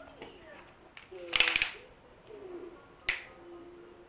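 Handling noise from a telescoping tripod-selfie stick: a short rattling scrape about a second and a half in, then a single sharp click near the end.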